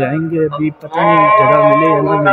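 A man singing in Arabic with no instruments, in the manner of a vocal nasheed. After a short phrase and a brief break he holds a long, slightly wavering note.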